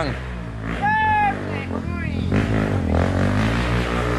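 Trail motorcycle engine idling steadily, with a short shout about a second in.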